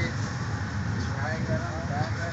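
Steady low rumble of a moving passenger train heard from inside the coach, with faint voices of other passengers talking under it in the second half.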